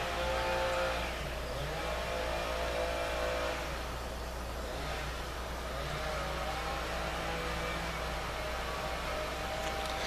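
A motor runs steadily, its drone made of several tones that slowly dip and rise in pitch a couple of times, over a constant low hum.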